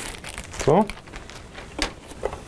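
Clear plastic protective film crinkling as it is pulled off and handled, in irregular crackles with a sharper one near the end.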